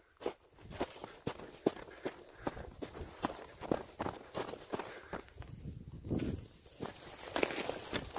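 Footsteps crunching on loose rock scree and patches of snow, about two steps a second, getting louder near the end. A person is breathing heavily from the climb, with a low rush of breath or wind on the microphone about six seconds in.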